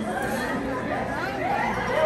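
Indistinct background chatter of several voices talking at once.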